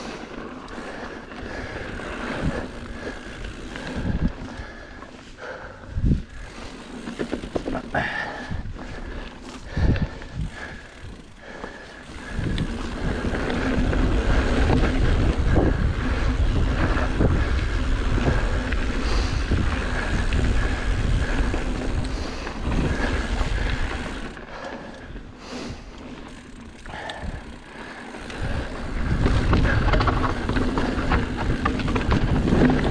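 Mountain bike riding over a dirt and rock trail: tyre noise with sharp knocks from the bike over bumps in the first ten seconds. About twelve seconds in, wind noise on the microphone grows much louder and heavier as the bike picks up speed. It eases off after about twenty-four seconds and comes back strongly near the end.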